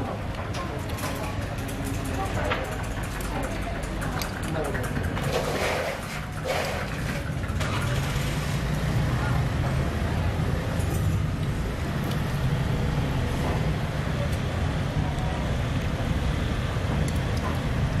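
Steady rumble of street traffic and motorbike engines, growing louder about eight seconds in, with voices talking in the background.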